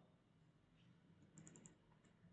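Near silence, broken about one and a half seconds in by a quick run of about four faint computer clicks as a word of code is selected.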